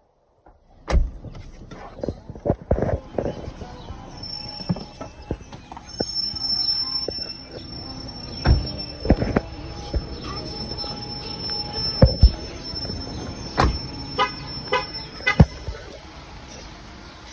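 Knocks, thumps and rustling as people climb out of a parked car and walk off, over street noise with a steady high whine from about six seconds in. A quick run of short beeps near the end.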